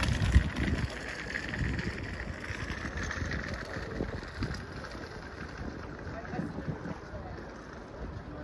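Wind buffeting the microphone in uneven gusts, with faint voices of people in an open-air crowd behind it.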